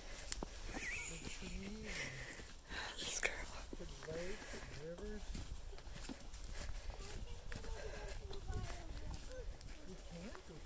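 Footsteps on a dry dirt trail strewn with fallen leaves, with faint voices of children talking ahead now and then.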